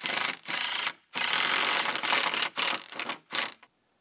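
Cordless power driver driving a screw into a wooden board. It runs in two short bursts, then one long run of about a second and a half, then several quick bursts as the screw seats.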